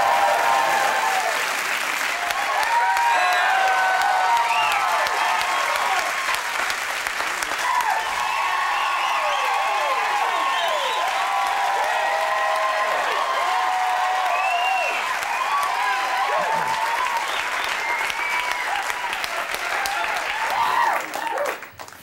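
Studio audience applauding and cheering with whoops, held steady and loud for about twenty seconds, then dying down near the end.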